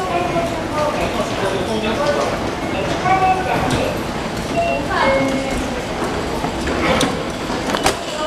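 Indistinct voices of people talking in a busy station, with footsteps and a few sharp clicks near the end.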